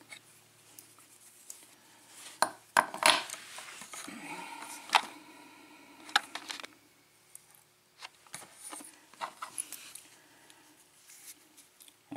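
A metal euro lock cylinder being handled: scattered light clicks and knocks of metal on metal and on the work surface as it is set down and turned in the fingers, the sharpest a few seconds in.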